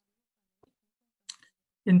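Near silence in a pause between spoken words, broken by two faint clicks about half a second apart. A man's voice resumes near the end.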